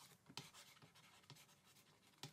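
Near silence with a few faint, soft taps of a pen writing words.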